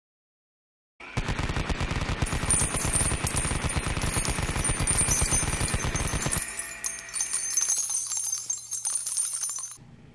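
Machine-gun fire sound effect: a rapid sustained burst starting about a second in and lasting about five seconds. It is followed by lighter, higher clinking and crackle that cuts off suddenly near the end.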